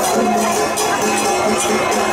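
Traditional temple-procession music: a held melody over a steady percussion beat of about three strokes a second.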